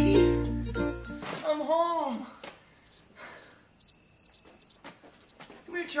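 A cricket chirping steadily in quick, even high-pitched pulses, starting as background music fades out about a second in. A voice rises and falls briefly around two seconds in.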